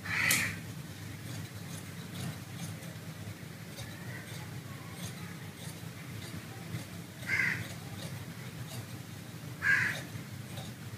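A crow cawing three times: at the start, about seven seconds in, and just before the end. Between the caws come faint, regular snips of tailor's shears cutting through brocade fabric.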